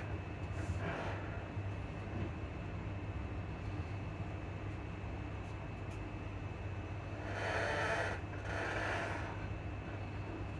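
Class 334 Juniper electric multiple unit heard from inside the passenger carriage: a steady low rumble as the train runs along. Near the end there are two brief louder rushes of noise.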